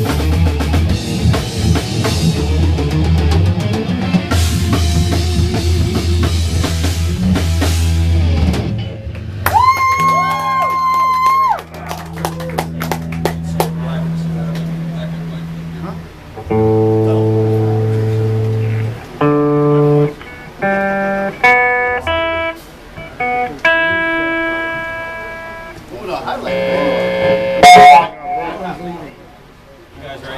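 Live heavy metal band through guitar amplifiers and a drum kit: the full band plays until about nine seconds in, then stops, leaving a single held electric guitar note that bends, a long low held note, and then single notes picked one at a time and left ringing, with a short loud burst of playing near the end.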